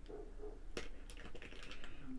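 Faint, scattered light clicks and scrapes of steel serving spoons against a stainless-steel pot and steel plates as food is ladled out, with one sharper click a little under a second in followed by a run of small ones.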